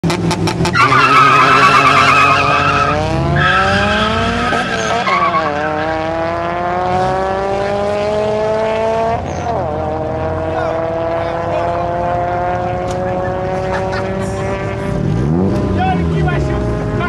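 Two cars launching side by side in a drag race: tyres squealing at the start, then engines revving up through the gears, with gear changes about four and a half and nine seconds in, growing fainter as the cars pull away.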